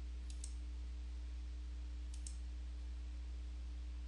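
Computer mouse button clicked twice in quick succession near the start and again about two seconds in, over a steady low hum.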